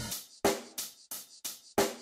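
Background music: a drum-kit intro of separate sharp hits, about three a second, each dying away before the next.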